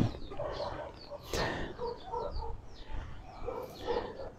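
Chickens clucking in short, scattered calls, with small birds chirping higher up. A brief rustle comes about a second in.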